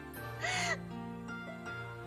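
A young woman's short crying sob, a single brief cry that rises and falls in pitch about half a second in, over sad background music of slow, held notes.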